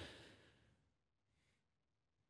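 Near silence in a studio, with a faint breath near the middle.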